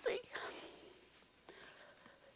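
A woman's soft, breathy whisper fading within the first half-second, then a faint, nearly quiet pause.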